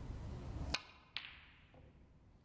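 A snooker shot: the cue tip clicks against the cue ball about three-quarters of a second in. Less than half a second later the cue ball strikes an object ball with a sharper, ringing click.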